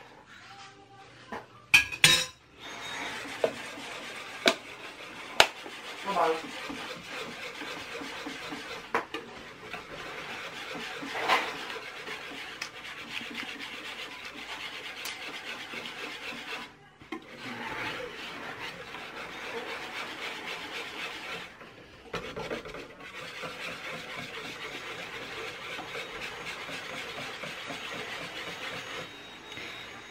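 Wire whisk beating leche flan custard mixture in a stainless steel bowl, a steady scraping rasp with two short pauses. A few sharp clinks of metal on the bowl come in the first few seconds.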